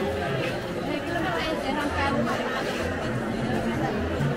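Chatter of many voices at a busy traditional market, vendors and shoppers talking over one another at a steady level.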